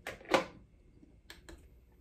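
A plastic essential-oil diffuser being handled and its button pressed to switch it on: a short knock about a third of a second in, then a couple of light clicks a little past the middle.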